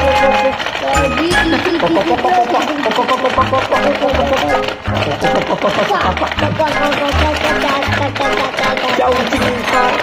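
Background music with a steady beat and melody, over rapid plastic clacking as the frogs' levers on a Feeding Froggies marble game are pressed over and over.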